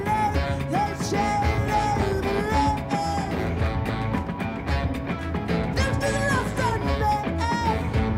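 Live band music in an instrumental section: a red electric guitar with two saxophones, one a baritone, playing held, bending melodic lines over a steady, dense accompaniment.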